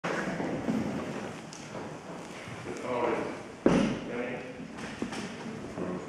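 Faint, indistinct speech in a large room, with one sharp knock a little past halfway.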